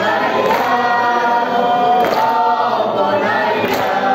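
Large crowd of men chanting a Persian Muharram lament (noha) in unison, with the whole crowd beating their chests together about every second and a half.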